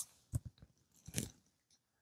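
Two brief soft clicks nearly a second apart, then near silence.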